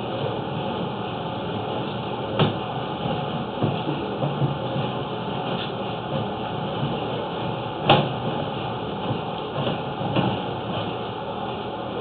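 Sewer inspection camera being pulled back through the pipe on its push cable: a steady scraping, rushing noise broken by a few sharp knocks, the loudest about 8 seconds in.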